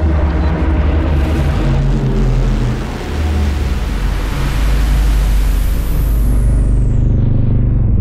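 Film-trailer sound design for a car reveal: a deep, steady rumble under a loud rush of noise that swells and then thins out, with a high whistle falling steeply in pitch near the end.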